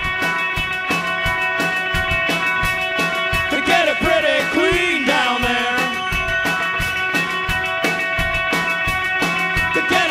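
Garage-punk band playing live: electric guitars holding a droning chord over a steady, fast drumbeat with cymbal hits. A shouted vocal line comes in about four seconds in and again near the end.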